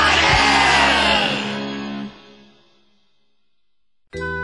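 Closing chord of a rock-opera track: a loud rock-band chord with cymbal wash and a drum hit, ringing out and fading to near silence about two seconds in.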